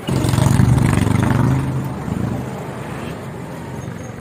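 A motor vehicle passing close by, its engine loud for about two seconds and then fading away.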